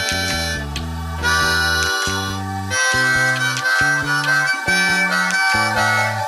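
Harmonica playing an instrumental break in a rock song: a run of held notes, changing about once a second, over a bass line that steps beneath it.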